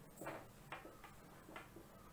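Faint, irregular taps and short scratches of a marker pen writing on a whiteboard, about five small strokes.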